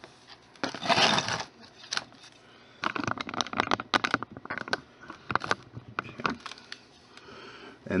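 Handling sounds at a tabletop zen garden: a short scrape as the terracotta saucer of sand is slid and set down, then a run of small clicks and taps as stones are picked over and handled.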